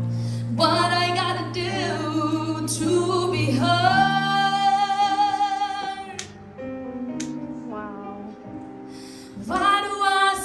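A young woman singing with electronic keyboard accompaniment from a Yamaha Motif, and a long held note in the middle. The voice then drops out for a few seconds under soft keyboard chords and comes back near the end.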